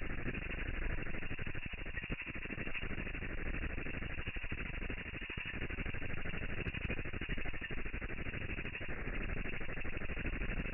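A domestic ultrasonic cleaner running, its buzz heard slowed down into a steady, dense, low rattle.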